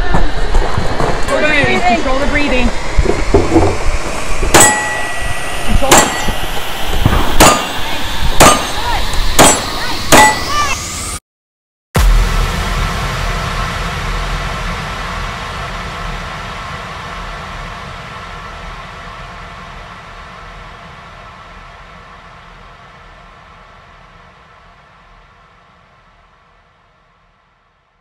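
Sharp metallic clangs, about six of them over the first ten seconds, each ringing briefly. After a short break comes a long, steady, layered sound that fades slowly away.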